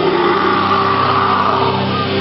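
Emo/screamo band playing live: loud electric guitars ringing on a held chord, with a voice over it.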